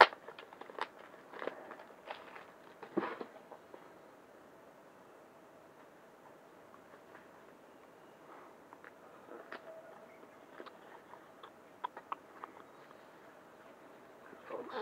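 Hands handling and opening a small cardboard product box: scattered clicks, taps and light rustles of the packaging, the loudest a sharp tap right at the start, with a quiet stretch in the middle.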